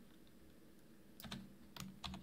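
A few keystrokes on a computer keyboard, short sharp clicks about a second in, after a moment of near silence.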